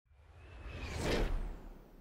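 A whoosh sound effect for the transition to an animated logo, swelling to a peak just past a second in, then fading away.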